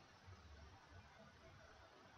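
Near silence, with only a faint low rumble and hiss.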